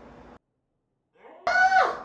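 Faint room tone that cuts to dead silence at an edit, then, near the end, a loud vocal exclamation sliding steeply down in pitch.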